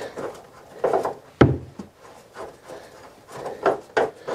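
Short scrapes and rubs as a hand turns a metal transducer fitting set in a fibreglass hull, with a sharp knock about one and a half seconds in. The fitting is gripping a little as it is worked loose.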